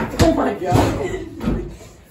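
Excited shouting and laughter during a basement basketball game, with a couple of hard thumps from the ball striking the floor, wall or hoop.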